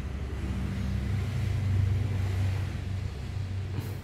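Road traffic outside: a passing vehicle's low rumble swells to a peak near the middle and then fades.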